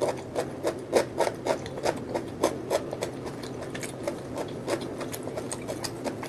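Close-miked chewing of a mouthful of crunchy raw cucumber, a quick run of wet crunches at about three to four a second.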